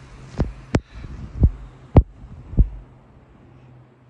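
Five dull thumps, irregularly spaced through the first three seconds, over a faint low hum.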